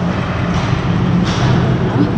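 Indoor ice rink ambience: a steady hum and background noise, with a brief hiss about a second in.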